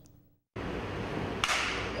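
A brief gap of silence, then open ballpark ambience, with a single sharp crack of a wooden bat hitting a baseball about a second and a half in.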